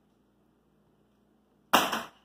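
A plastic hula hoop dropping onto a hardwood floor, landing with one loud clatter near the end.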